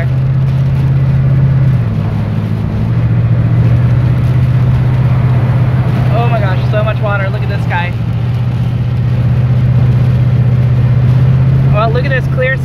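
Car driving through heavy rain on a flooded road, heard from inside the cabin: a steady low engine and road drone under a continuous wash of tyre spray and rain on the windscreen. The engine note drops a little about two seconds in.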